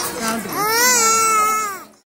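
A small boy crying loudly to be taken home: a short cry, then one long wail that fades out near the end.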